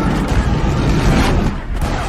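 Cannon shot: the blast rolls on as a loud, deep rumble and dies away near the end.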